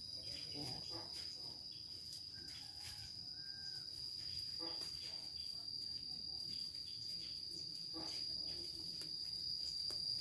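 Insects droning steadily at one unchanging high pitch, with scattered soft clicks and rustles.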